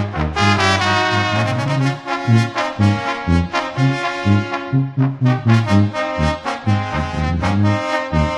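Brass band playing an instrumental passage: trumpets and trombones carry the melody over a pulsing low bass line, with percussion strikes keeping a regular beat.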